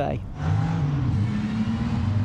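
Supercharged straight-six engine of the 1935 ERA R4A racing car running hard as the car drives along the hill-climb course. It comes in about half a second in, its pitch rising slightly.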